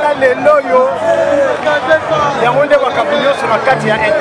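People talking, voices overlapping in lively chatter.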